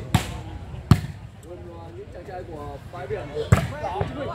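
A volleyball struck hard by hand three times during a rally: sharp slaps near the start, just under a second in, and about three and a half seconds in, the last as a player goes up at the net. Voices in between.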